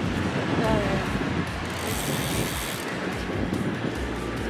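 Steady wind rush on the microphone and tyre noise from a road bicycle being ridden, with a short vocal sound under a second in.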